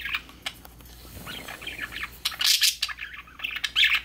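Pet budgerigar singing: a fast, chattering warble of high chirps, loudest in a burst a little past halfway and again near the end.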